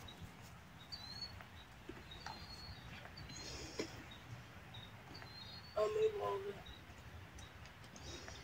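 Quiet outdoor ambience with faint, short bird chirps every second or so, and a faint voice briefly about six seconds in.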